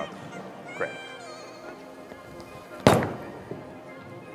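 A single sharp thud about three seconds in as a bowling ball, a urethane Purple Hammer, is released and lands on the wooden lane, over steady background music.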